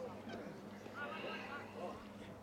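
Faint, distant shouting voices of players and onlookers at a rugby league game, with short, high calls about a second in, over a steady low hum.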